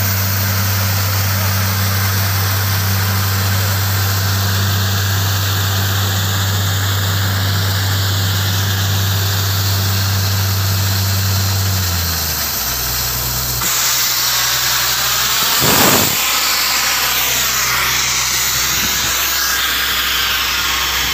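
Borewell drilling rig running with a steady low engine hum while water and muddy slurry are blown out of the bore with a hissing spray. About twelve seconds in the engine drops to a lower pitch, and a brief louder rush comes a few seconds later.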